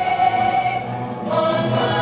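Parade music: a choir singing held notes over instrumental backing, moving to a new chord a little past halfway.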